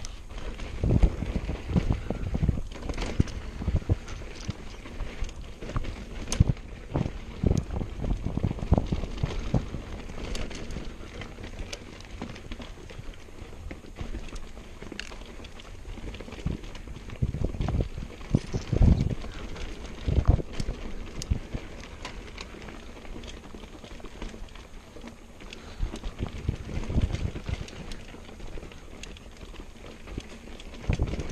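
Mountain bike descending a dirt singletrack: tyres rolling on dirt, with irregular knocks and rattles from the bike going over bumps and roots, and wind rushing over the microphone. The clatter comes in busy stretches near the start and again past the middle, with calmer rolling between.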